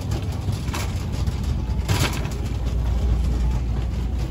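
Shopping cart rolling over a tiled store floor: a steady low rumble from the wheels, with brief rattles about a second and two seconds in.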